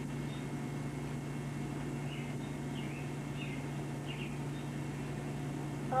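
A steady low hum with quiet room noise, and a few faint, short high chirps between about two and four seconds in.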